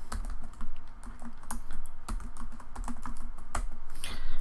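Computer keyboard being typed on, a quick irregular run of key clicks as a word is entered.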